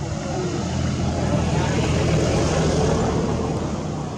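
A passing motor vehicle's engine, a low steady hum that grows louder to a peak about two to three seconds in and then eases off.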